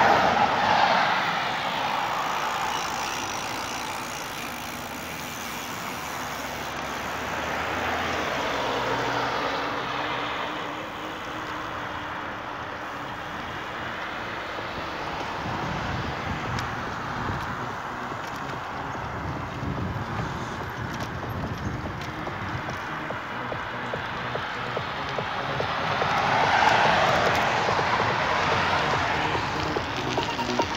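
Cars passing on the road alongside, their tyre and engine noise swelling and fading away. The loudest passes come about a second in and near the end, with a weaker one in between.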